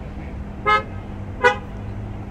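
A car horn giving two short toots about a second apart, the first a little longer than the second.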